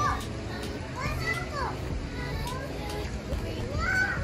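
Young children playing and calling out, with high-pitched rising-and-falling voices about a second in and again near the end.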